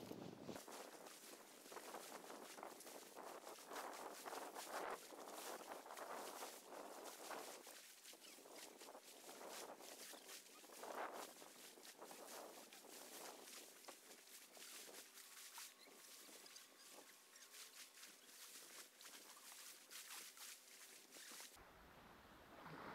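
Faint, irregular crunching and scraping of sand and pebbles: sand being dug away from a stuck van's front wheel, then footsteps on the beach.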